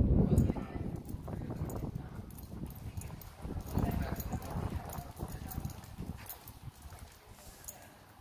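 A horse's hooves clip-clopping on a paved street, with voices of people nearby. A gust of wind rumbles on the microphone in the first half second.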